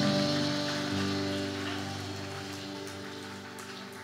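A worship band's sustained chord, mostly keyboard, fading out slowly and steadily, with a few faint ticks in the second half.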